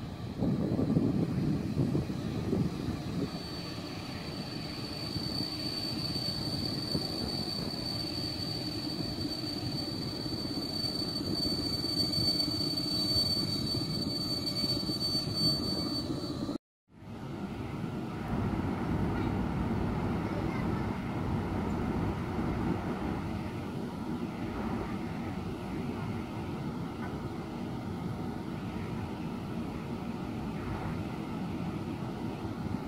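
PKP class EP07 electric locomotive hauling an intercity train as it approaches: a steady rumble, with a thin high whine held for much of the first half. The sound cuts out for a moment about halfway through, then the rumble resumes.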